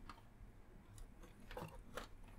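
Faint plastic clicks and handling sounds of a toy birdcage being pulled off its base, with a few light ticks about a second in and near the end.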